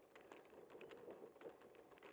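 Faint, irregular clicking and light rattling, several clicks a second, from a bicycle in motion picked up by its mounted camera.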